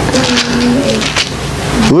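Bible pages rustling and flapping as they are leafed through, with a low, steady hummed "mmm" held for about a second.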